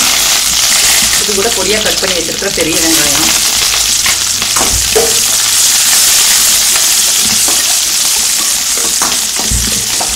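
Sesame oil sizzling hard in a stainless steel kadai with a tempering of mustard seeds, urad dal, fenugreek and curry leaves. Partway through, sliced onions go in and keep sizzling as a steel ladle stirs them, with a low thump about five seconds in.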